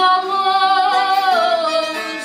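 A woman singing fado, holding one long note with vibrato that slides down in pitch about two-thirds of the way through, over guitar accompaniment.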